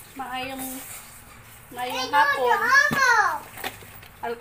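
A young child's high-pitched voice talking, briefly at the start and again for a longer stretch from about two seconds in, its pitch swooping up and down. A single sharp knock sounds near the end.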